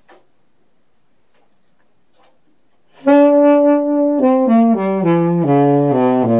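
Saxophone played alone: after a quiet stretch with a few faint clicks, it comes in about halfway through with a long held note, then plays a run of falling notes.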